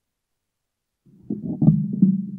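Dead silence, then about a second in the podium microphone's channel comes on with a steady low electrical hum and a few knocks and bumps of the microphone being handled.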